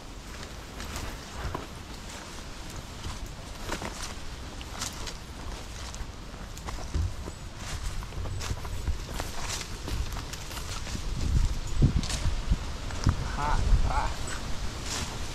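Footsteps and rustling through long dry grass and fallen leaves, an irregular crunching about once or twice a second that grows busier and louder for the last few seconds, over a low wind rumble on the microphone.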